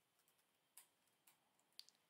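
Near silence with a few faint computer keyboard clicks.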